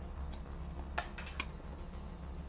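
A few light clicks and taps of small glasses on a wooden counter as lime-wedge garnishes are set on gin and tonics, over a low steady hum.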